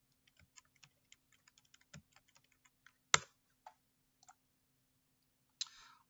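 Computer keyboard being typed on in a quick run of light keystrokes for the first few seconds. Then comes a single louder key click about three seconds in and a few scattered clicks.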